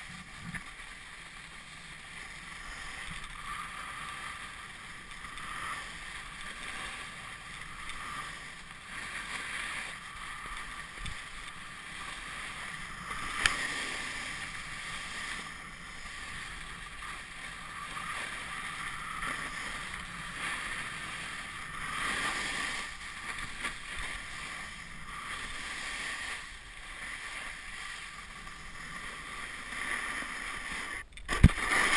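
Hiss and scrape of snow under a rider sliding and carving down a groomed slope, rising and falling with each turn, with some wind on the camera's microphone. A single sharp click about halfway through.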